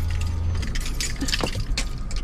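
Light clinking and jangling, like keys, as hands fumble at the car's steering column and door, over the low hum of the car.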